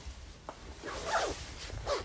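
Zipper on a heavy winter jacket being pulled up in two short strokes, with a small click about half a second in.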